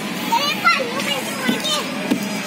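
Young children's voices at a playground: high-pitched calls and chatter that bend up and down in pitch, loudest in the first second, over a steady hubbub of other voices.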